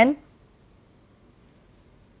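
Faint scratching of a pen writing on a board, mostly in the first second.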